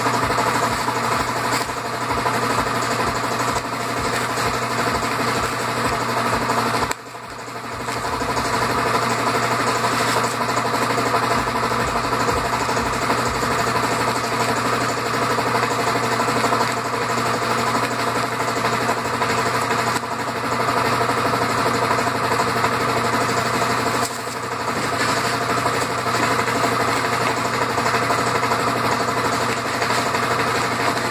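A small handheld electric tool running steadily as it carves polystyrene foam. It cuts out briefly about seven seconds in and comes back up to speed, with a shorter dip near 24 seconds in.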